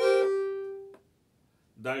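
Button accordion (bayan) sounding a G held for about a second, with a brief staccato chord over it at the start (B-flat, C, G); the note fades and stops. A man's voice comes in near the end.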